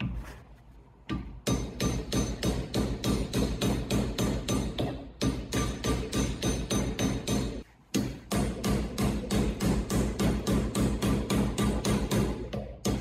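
A soft-faced mallet hammers the edge of a 2 mm steel disc over a steel former held in a vise, about four to five strikes a second with a ringing metallic tone. The blows start about a second in and break off briefly twice, near five and near eight seconds.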